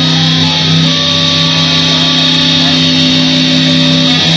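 Distorted electric guitar playing instrumental metal live through an amplifier, letting held notes ring on with little picking until the part changes about four seconds in.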